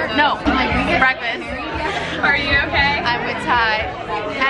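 Several women talking over one another at close range.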